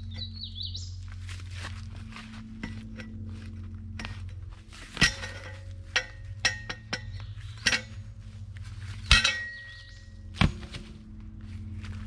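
Steel T-post and an upturned T-post driver clinking and clanging against each other as the driver is latched onto the post and used to lever it out of the ground. There are about seven sharp metal clinks with brief ringing, spread through the second half.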